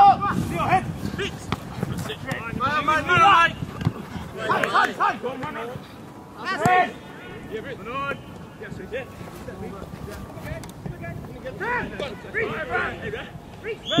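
Shouts from players and coaches calling across an outdoor football pitch, short calls coming every second or two with gaps between them.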